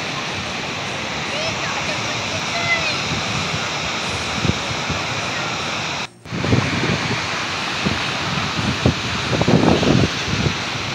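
Steady rush of water pouring out through a breach in an irrigation canal bank, recorded on a phone, with wind buffeting the microphone and voices in the background. The sound drops out briefly just past the middle.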